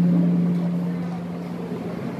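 A steady low-pitched hum, one unwavering tone, fades out about a second in, leaving faint room noise.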